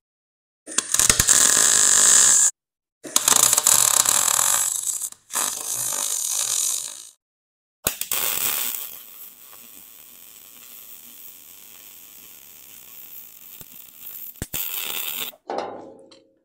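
MIG welder crackling in three bursts of about two seconds each as a steel exhaust elbow is tacked and welded to a flange plate. A longer weld burst follows that starts loud and drops to a faint steady hiss before stopping.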